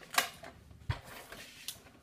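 Handheld tape runner laying adhesive on paper: short scraping strokes and a few sharp clicks, with a low knock about a second in.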